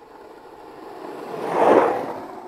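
A single whoosh of noise that swells up and peaks near the end, then fades.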